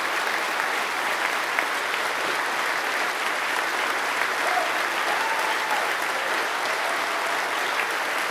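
A large audience applauding steadily, many hands clapping at once.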